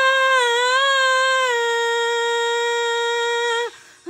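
A woman's voice singing one long, high held note unaccompanied, wavering slightly in pitch over the first second and a half, then steady, and breaking off shortly before the end.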